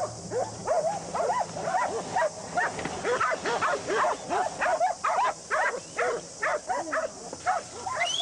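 A dog barking rapidly and without a break, about three or four short barks a second.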